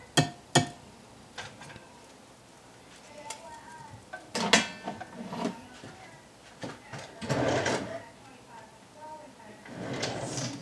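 A metal cooking utensil clinking and scraping against a skillet and a glass bowl while cooked chicken breast is moved between them. There are two sharp clinks at the start, a clatter about halfway through, and a longer scrape a little later.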